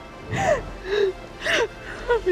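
A woman crying: three short gasping sobs about half a second apart, over soft background music.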